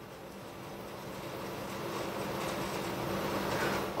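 Steady background noise with a faint hum, growing slowly louder over the few seconds.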